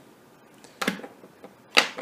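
Old Zippo lighter insert handled in the hand: two sharp metal clicks about a second apart, the second louder.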